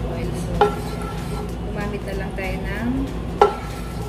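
Wooden spoon stirring oil in a nonstick frying pan, knocking against the pan twice, about three seconds apart; each knock rings briefly. A steady low hum runs underneath.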